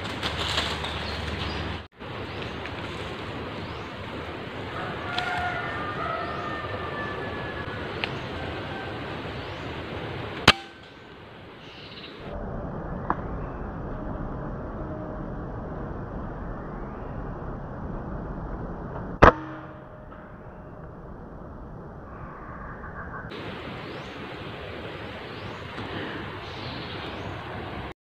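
Two sharp air rifle shots, about nine seconds apart, over a steady outdoor background hiss.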